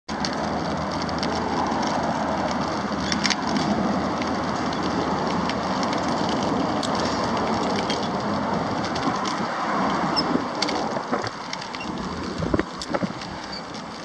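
Steady street noise of road traffic, with a few faint clicks, easing off about eleven seconds in.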